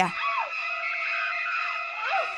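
Shrieking high string music from a horror film score: several notes held steadily, with short swooping glides rising and falling over them.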